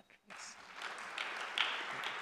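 Audience applause from a seated crowd, starting just after the start and quickly rising to a steady level of many hands clapping.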